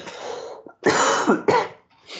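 A man coughing several times, loudest in two harsh coughs about a second in.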